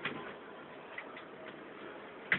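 A few faint, irregularly spaced light clicks from a laptop's plastic case being handled during disassembly, over steady background hiss.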